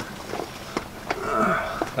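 A few light clicks and knocks as the tractor seat and its metal mounting bracket are handled.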